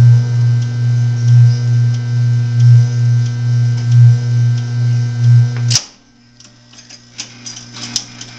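Seeburg Select-O-Matic jukebox with no music playing: a loud steady hum through its speaker, swelling about every second and a third, cuts off with a sharp click near the end. Faint mechanical ticking from the record-changing mechanism follows.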